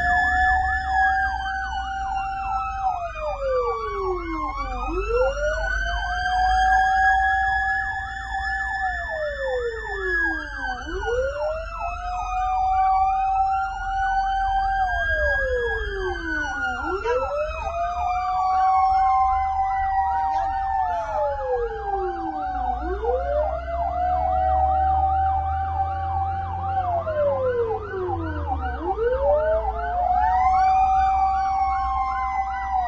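Several emergency sirens wailing at once, heard from inside a moving fire truck's cab. One siren rises, holds and falls again about every six seconds. A second, higher one sweeps up and down more slowly, and a fast yelping warble runs over both. Under them is a low engine and road rumble that grows louder past the middle.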